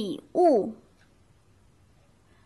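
A woman's voice saying the Mandarin word 'lǐ wù' (gift), two short syllables in the first second, the second falling in pitch.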